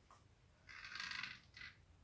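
Nylon monofilament fishing line pulled through a knot and fingers: a faint rasping rub for just under a second, then a shorter one, as the knot slides down toward the hook eye.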